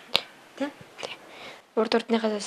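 A person's voice in a pause of talk: one sharp click just after the start, a few faint voice sounds in the middle, and speech starting again near the end.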